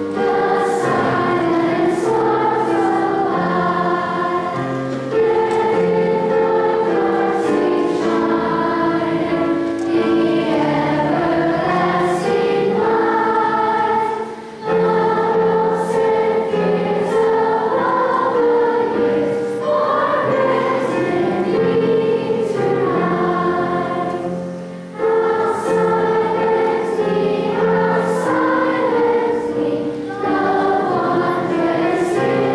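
A large children's choir singing in unison, with long held notes, phrasing with two brief breaks, one about halfway through and one a few seconds before the end.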